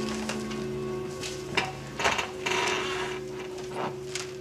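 Soft background music holding one sustained note, under a handful of sharp clicks and knocks and a brief rustle from papers and small items being handled on a desk.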